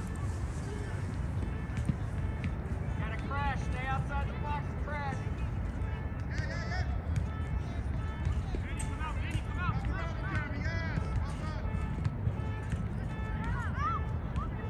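Wind rumbling steadily on the microphone, with children's high-pitched shouts and calls from a soccer game coming in bursts over it.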